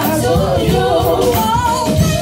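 A group of women singing a gospel song together through microphones, with musical accompaniment underneath.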